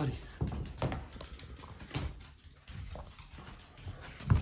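Small dogs' claws clicking and tapping on a wooden floor as they move about, a few irregular clicks and knocks.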